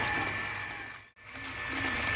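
Water splashing and sloshing as a hand rinses drumstick flowers in a steel colander. The sound fades out to silence a little past halfway and fades back in.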